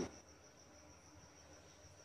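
Near silence with a faint, steady, high-pitched pulsing trill in the background, typical of a cricket.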